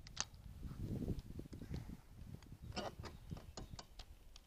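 A spincast fishing reel being cranked to retrieve line, giving faint, irregular clicks over a low rumble of handling on the microphone.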